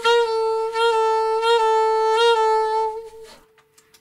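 Alto saxophone repeating a written G sliding down to F-sharp four times, about every three quarters of a second, slurred in one continuous breath that ends a little after three seconds in.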